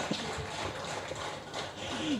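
Soft laughter and low murmur from people on a stage, with a few faint knocks.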